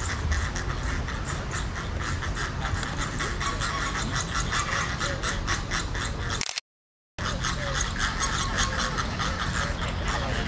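A flock of Chilean flamingos calling together: a continuous chatter of rapid, overlapping honks from many birds. About six and a half seconds in, the sound cuts out completely for about half a second, then resumes.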